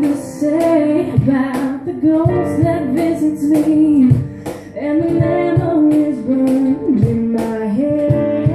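A woman singing a song live, accompanied by a strummed guitar.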